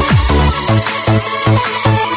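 Chinese electronic dance remix with a fast kick-drum beat. Just after it begins the kick gives way to pulsing bass, about four beats a second, under a high falling sweep.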